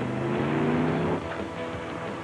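A car's engine running hard, mixed with the film's music score. A steady pitched drone rises slightly over about the first second and then stops abruptly.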